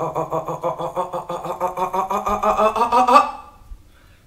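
A woman's voice holding one long wordless sound, a drawn-out hum or moan on a single pitch with a slight wobble. It rises a little near the end and stops a little over three seconds in.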